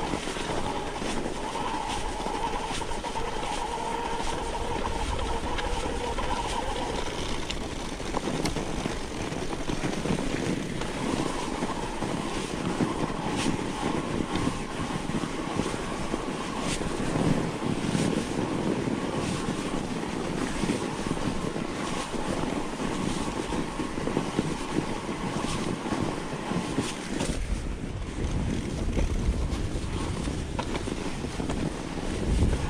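Mountain bike rolling down a packed-snow track: a steady rush of the tyres over the snow, with many small clicks and rattles from the bike. Near the end a low rumble of wind on the microphone comes in.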